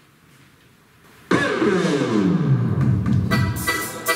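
An accordion orchestra starts a techno-style piece: after a second of quiet, a loud sudden note sweeps down in pitch, and near the end short rhythmic accordion chords begin.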